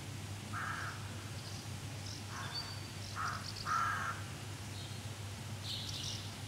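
A crow cawing: four short, harsh caws spread over a few seconds, the last slightly longer, over a steady low hum.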